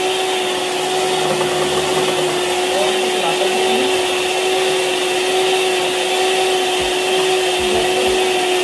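Electric hand mixer running steadily, its beaters whisking thick mayonnaise in a plastic tub: an even motor whine holding one pitch.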